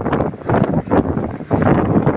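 Wind buffeting the microphone, rising and falling unevenly, from riding on the open back of a moving truck.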